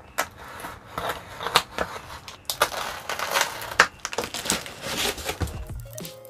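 Packing tape on a parcel being slit with a snap-off utility knife and the tape-covered plastic wrapping torn and peeled away: irregular cracks, rips and crinkling rustles, with one longer tearing stretch near the middle.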